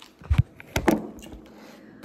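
Two short knocks, a dull thump and then a sharper click about half a second later, as a phone filming on a table is handled and set back upright after falling over.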